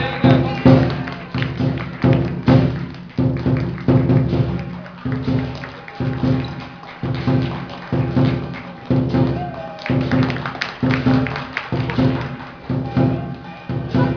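Lion dance percussion: a large Chinese drum beating a steady rhythm with cymbals ringing between the strokes.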